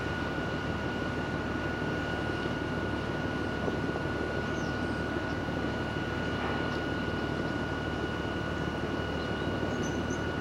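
A ro-ro ferry's onboard machinery heard from the deck: a steady low rumble with a constant high whine over it.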